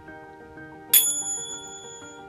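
A single bright bell ding about a second in, its clear high ring fading away over about a second, over soft background music.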